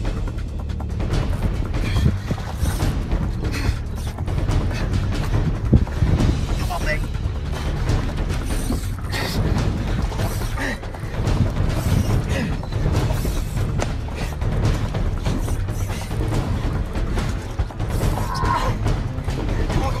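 Spinning fishing reel being cranked, its mechanism and drag clicking while a fish pulls on the line, over wind buffeting on the microphone and background music.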